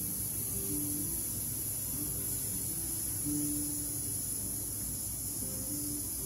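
A long, steady hissed "sss" exhalation: a singer's breath-control warm-up, the out-breath held evenly on a hiss to train the breathing muscles.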